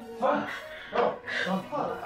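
A person's short, sharp vocal exclamations, about four in quick succession.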